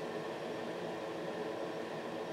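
Steady room tone: an even hiss with a faint hum, like a fan or air conditioner running.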